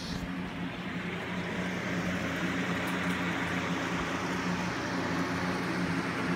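Aquarium equipment in a room of running fish tanks: a steady mains-type hum under an even hiss of moving water and air, growing slightly louder after the first second.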